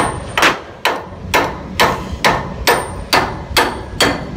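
A hammer striking steel pipework in a steady rhythm, a little over two ringing blows a second, during an oilfield rig-down.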